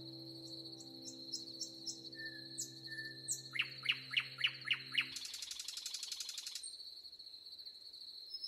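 Forest birds singing: short high chirps, a whistled note, a run of about six quick falling notes and a buzzy trill, over a steady high insect buzz. A held piano chord fades out about five seconds in.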